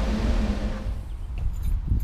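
Steady whir of an electric fan running, with a faint hum in it. About a second in, the whir drops away, leaving only a low rumble.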